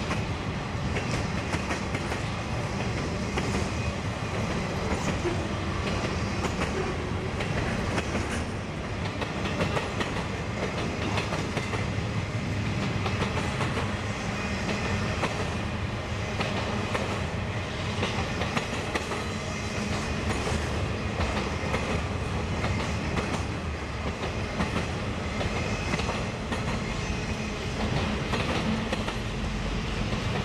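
Intermodal freight train rolling past, its flatcars carrying highway trailers: steady rolling noise of steel wheels on rail with a continual run of clicks as the wheels cross rail joints.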